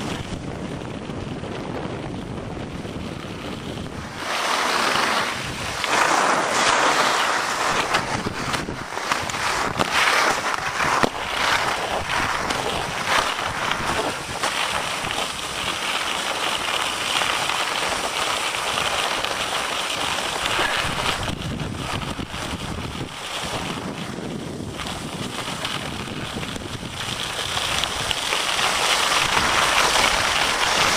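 Wind rushing over the microphone and skis hissing over snow during a downhill run, a steady noise that grows louder and brighter from about four seconds in.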